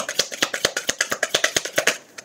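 A deck of cards being shuffled by hand: a quick, even run of card snaps, about ten a second, that stops just at the end.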